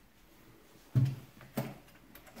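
Two short bumps of handling work at the base of an air-conditioner indoor unit, about a second in and again half a second later, in an otherwise quiet room.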